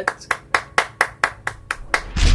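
One person clapping his hands in a steady rhythm, about four claps a second.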